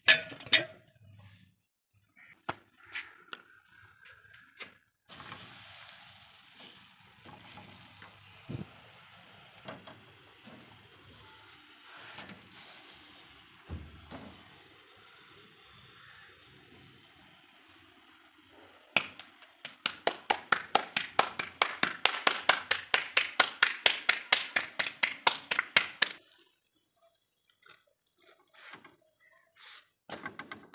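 Roti making at a gas stove with an iron griddle: a sharp knock at the start, several seconds of steady hiss, then a fast, even run of slaps, about six a second for some seven seconds, of roti dough being patted out between the palms.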